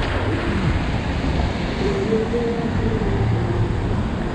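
Street traffic at an intersection: cars driving past on wet pavement, with a steady hiss of tyres on the wet road over a low rumble of wind on the microphone.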